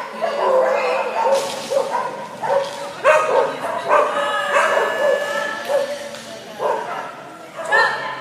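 A dog barking and yipping repeatedly in quick runs, about two barks a second, with a lull shortly before the end.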